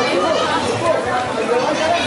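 Several people talking at once: steady crowd chatter of overlapping voices with no single voice standing out.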